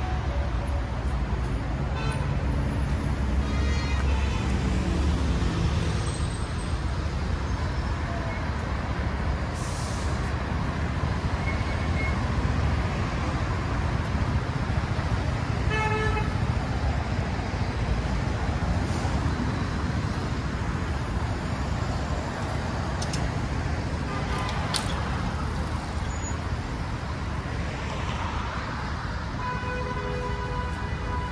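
Steady road traffic: cars passing with engine and tyre noise, with a deeper rumble from a close vehicle over the first few seconds and a short horn toot about halfway through.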